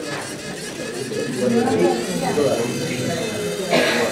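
Low, murmured talking from several people in a room, with a short noisy burst near the end.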